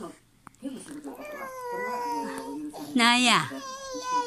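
Baby vocalizing: a long drawn-out babble, then a loud, high squeal falling in pitch about three seconds in.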